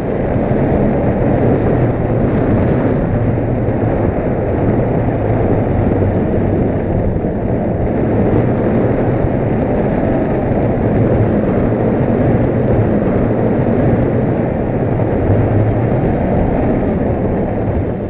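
Wind rushing over an action camera's microphone in paragliding flight: a loud, steady, low noise with no let-up.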